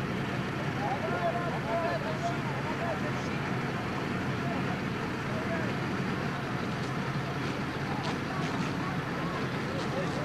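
Steady outdoor din of an engine running and water hissing from fire hoses being sprayed, with faint distant voices calling during the first few seconds.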